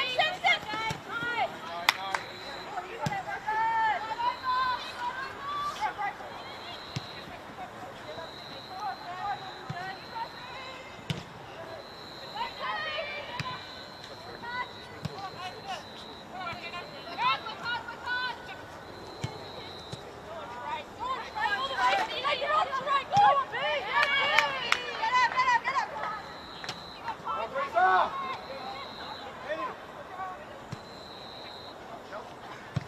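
Women footballers shouting and calling to each other across the pitch during play, loudest in a cluster of calls past the middle, with occasional thuds of the ball being kicked. A faint high tone comes and goes in the background.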